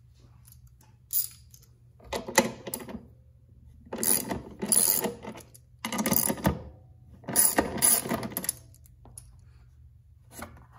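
Hand socket ratchet clicking in four short spells of rapid clicks as it turns a nut on a hood-latch striker base, after a single click about a second in.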